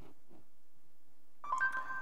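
A short electronic chime from a Nexus 7 tablet's speaker about one and a half seconds in, a couple of steady tones held briefly: Google voice search's tone as the spoken query is captured and the search runs. Before it, only faint room hum.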